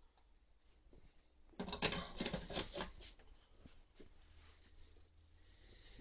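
Scratchy rustling and light clicking as fried pieces are handled out of a wire fry basket: a burst starting about one and a half seconds in and lasting about a second and a half, then a few faint scattered ticks.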